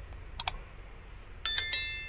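Subscribe-animation sound effects: a quick double mouse click about half a second in, then a bright bell ding about a second and a half in, ringing with several tones and fading, over a steady low background hum.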